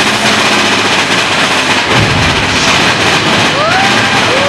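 Roller coaster train running through a tunnel: a loud, steady rumble and rattle of the cars on the track, growing heavier about halfway through.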